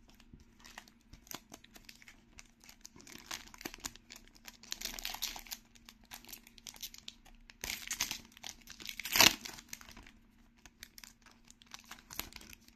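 Foil-lined plastic trading-card pack crinkling in the hands, then ripped open with a sharp tear about nine seconds in.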